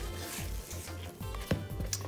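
Silicone spatula scraping thick cake batter around the sides of a plastic mixing bowl, soft, with a few light knocks in the second half.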